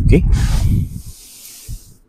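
A man's spoken "okay", then a long breathy hiss, an exhale close to the microphone, that fades out after about a second.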